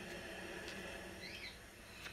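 Quiet room tone with a faint click, then about a second and a half in one faint short chirp that rises and falls in pitch.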